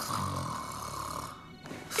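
A cartoon character snoring loudly: one long snore lasting a little over a second, then a brief pause.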